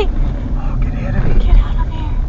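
Car driving along a road, with a steady low rumble of engine and tyre noise picked up inside the cabin by a windscreen dashcam.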